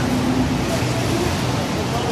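Steady street traffic and vehicle engine noise, with people talking.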